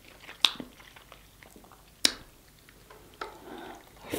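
Close-miked chewing and wet mouth sounds from eating sauce-coated king crab meat, with two sharp clicks about half a second and two seconds in.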